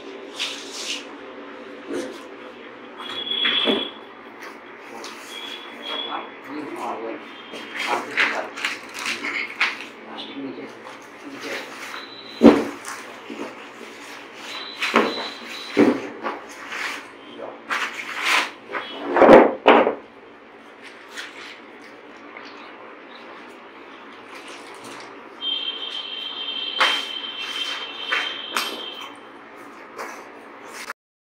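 Plastic packing bag rustling and crinkling, with scattered knocks and thuds of cardboard and packing, as a flat-screen TV is pulled out of its box and unwrapped. The loudest knocks come about twelve seconds in and again near twenty seconds.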